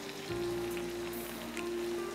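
Sizzling and crackling of marinated chicken pieces on a wire grill over an open gas flame, with a steady tone setting in shortly after the start.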